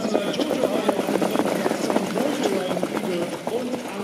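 Hoofbeats of several trotters pulling racing sulkies over a sand track, a rapid, irregular clatter as the field passes close by, with voices underneath.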